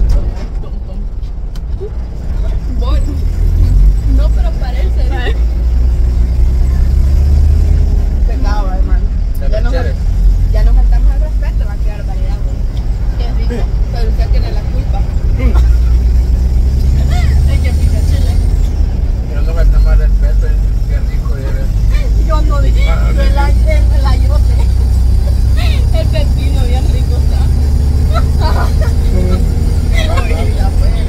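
Steady low rumble of a moving bus, engine and road noise heard from inside the passenger cabin, with passengers chatting and laughing over it.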